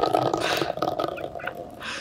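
A metal food can rolling across rough concrete paving slabs. It makes a continuous gritty rumble with small ticks that dies away near the end.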